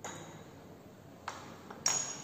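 Laboratory glassware clinking: three sharp glass-on-glass or glass-on-bench clinks, the last one loudest with a brief high ring.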